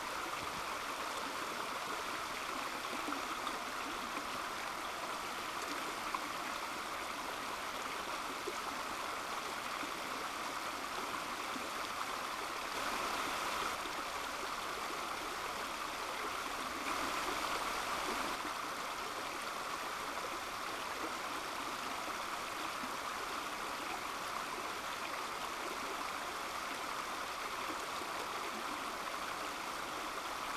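Shallow, low-running creek flowing over rocks: a steady rush of water that swells slightly twice around the middle.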